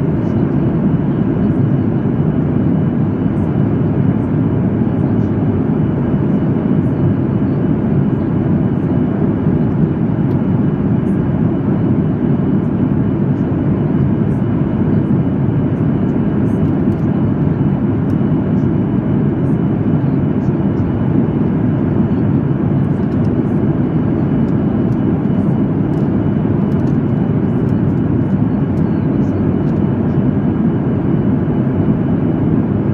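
Steady cabin noise of a Boeing 737 MAX 8 at cruise, heard from a window seat over the wing: an even, low rush of airflow and engine drone that holds level throughout.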